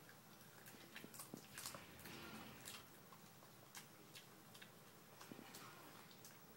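Faint, irregular crunching and clicking of a dog chewing raw cauliflower, busiest in the first half.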